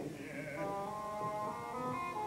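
A male opera voice finishes a sung phrase about half a second in, then the orchestra carries on alone with held notes layered in the strings and woodwinds.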